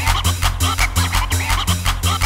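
Makina (hard Barcelona dance music) track: a fast, steady kick drum and bass line with warbling high synth sounds over it.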